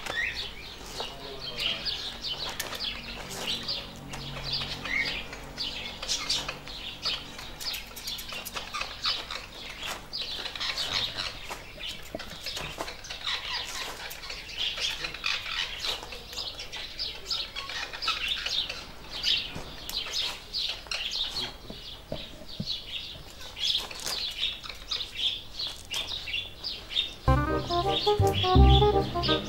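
Small birds chirping and twittering throughout in quick, overlapping calls. Music starts up loudly near the end.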